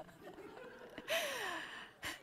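A woman's laughing sigh: a faint held voice, then about a second in a breathy exhale whose pitch glides down.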